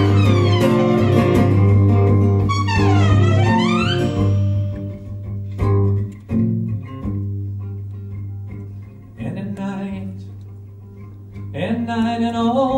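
Live band playing an instrumental passage between sung verses over a sustained low bass note. For the first four seconds a lead instrument slides up and down in pitch. Then the music drops to quieter, separate plucked notes and swells again near the end.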